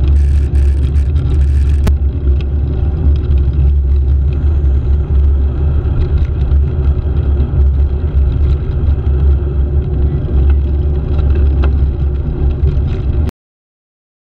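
Steady rumbling wind and road noise on the microphone of a handlebar-mounted camera while riding along the road, with passing traffic mixed in. The sound cuts off suddenly near the end.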